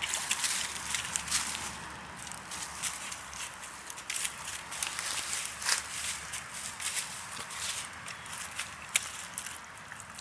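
A German Shepherd puppy walking and pawing through wet mud and dry fallen leaves: irregular crackles and rustles, many small sharp clicks.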